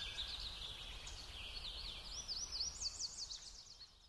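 Songbirds chirping in a steady run of quick rising and falling notes over a faint low rumble, fading out near the end.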